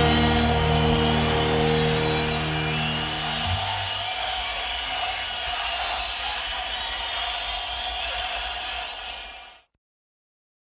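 A rock band's final chord rings out over drum-kit cymbals. The low, sustained notes stop about three and a half seconds in, and the cymbal wash fades until the sound cuts off just before the end.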